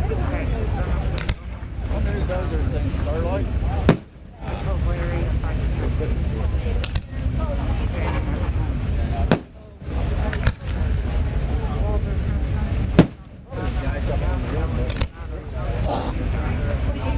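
Aerial fireworks shells going off: three sharp bursts several seconds apart, about four, nine and thirteen seconds in. Each burst comes roughly two and a half seconds after a duller launch thump, and the level dips briefly after each. Under it all are a steady low rumble and crowd chatter.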